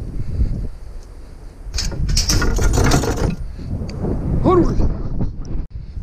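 Loaded mesh-sided utility trailer rattling and clanking as it is towed along a street, over a steady low road and engine rumble. The metal clatter is loudest for a couple of seconds near the middle. A short rising-and-falling pitched sound comes about two-thirds of the way in.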